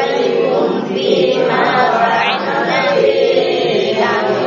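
A group of students reciting the Quran aloud in unison, chanting long drawn-out Arabic syllables together as a tajwid drill.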